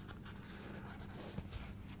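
Pencil drawing on sketchbook paper: faint scratching strokes of the graphite across the page.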